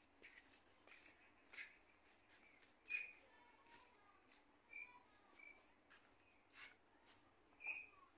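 Near silence: faint scattered clicks and a few short, high chirps.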